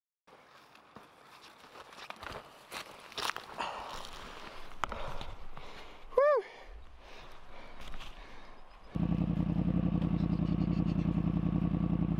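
Knocks and rustling of a camera being handled close up, with footsteps, then about nine seconds in a Yamaha FZ-10's inline-four engine running loud and steady.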